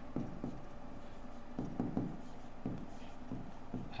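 Handwriting with a stylus on an interactive writing board: a series of short, faint scratching pen strokes as a few words are written.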